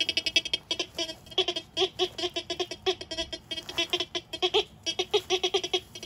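TX 850 metal detector sounding a rapid, irregular series of short beeps at a few different pitches as its search coil passes over the dug soil.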